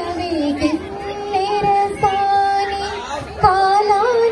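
A woman singing solo into a microphone over a PA system, holding long, steady notes and sliding between them.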